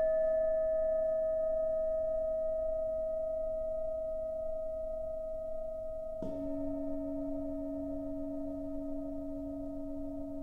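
Tibetan singing bowls ringing: a bowl struck just before rings on and slowly fades, then a larger floor bowl is struck with a padded mallet about six seconds in, adding a lower tone. Some of the tones waver with a slow pulsing beat.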